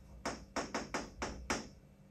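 Pen tip tapping against the screen of an electronic whiteboard while a word is written, a quick run of about seven short, sharp taps that stops shortly before the end.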